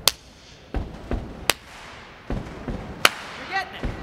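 A group keeping a body-percussion beat: two low stomps followed by a sharp hand clap, the stomp-stomp-clap pattern repeating about every one and a half seconds.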